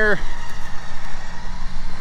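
Off-road Jeep's electric winch running under load, hauling in synthetic rope with the engine running: a steady mechanical hum with a faint steady whine.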